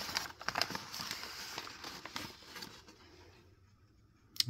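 Soft crinkling and rustling of packing paper as a pen is unwrapped by hand, thinning out after about two and a half seconds.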